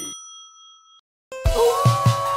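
A single bright, bell-like ding sound effect that rings out and fades over about a second, followed by a moment of silence. Near the end, music with a steady thumping beat starts up.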